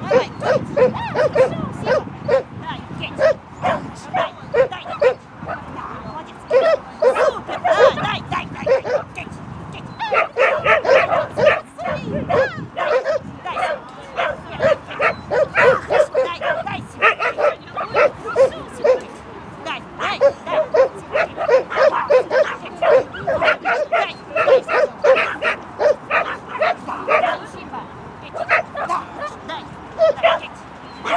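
A Shetland sheepdog barking over and over in short, high, rapid barks, about two or three a second with brief pauses, the excited barking of a dog at play.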